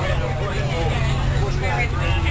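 A school bus's engine and road noise as a steady low drone inside the moving bus, under the chatter of a busload of passengers.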